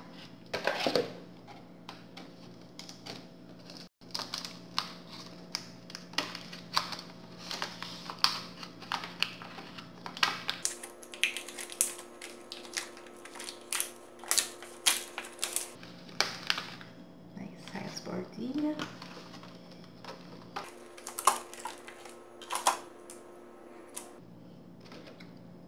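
Irregular sharp clicks and crackles, several a second, from a rigid plastic Easter-egg chocolate mould being flexed and pressed by hand as the chilled, set chocolate shell pops free of it.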